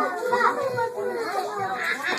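Several young children's voices talking and calling out over one another in a large room.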